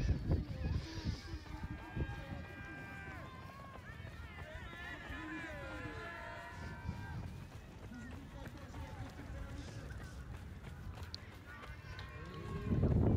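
Faint distant voices talking and calling, heard through a low, uneven rumble of footfalls and wind on the microphone of a camera carried at a run.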